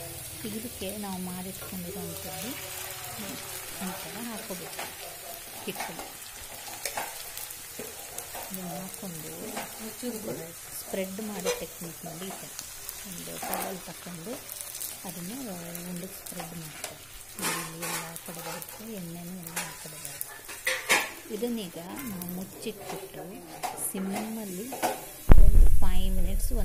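Onions and rice batter sizzling in hot oil in an iron kadai, with a few sharp knocks of a utensil against the pan. Just before the end comes a sudden, loud low rumble.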